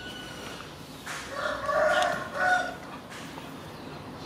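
A loud animal call, drawn out for about a second and a half with a short break near its end, starting about a second in.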